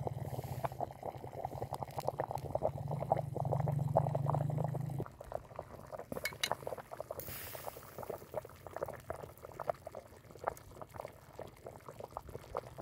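Dizi broth boiling in a stone pot, a busy patter of small popping bubbles. A low steady hum underneath cuts off about five seconds in.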